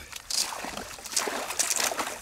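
Water splashing in irregular bursts with a crackle of thin ice as a retriever dog wades through the iced-over edge of a pond.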